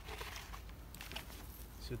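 Dry cow manure pouring from a plastic bucket onto soil and spread by hand: a soft rustling, scattering sound with a few small crackles about a second in.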